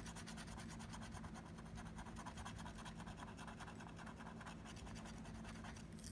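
Plastic stylus scratching the coating off an instant lottery scratch-off ticket in a quick, even run of short strokes, faint.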